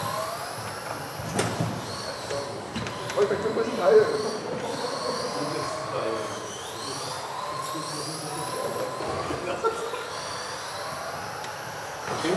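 Several electric RC model cars racing on a hall track, their motors and drivetrains whining in pitches that keep rising and falling as they accelerate and brake. A sharp knock comes about a second and a half in.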